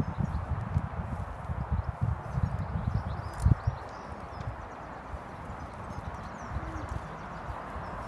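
Hooves of a horse walking on grass, irregular soft low thuds, with one louder thud about three and a half seconds in; the footfalls grow quieter in the second half.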